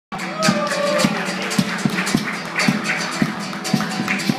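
Live acoustic ensemble playing an instrumental introduction: acoustic guitar and a small strummed string instrument with hand percussion, in an even beat of about two strokes a second.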